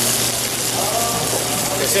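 Sable fish and Chinese long beans sizzling in hot sesame oil in a sauté pan over a medium-high flame, a steady hiss.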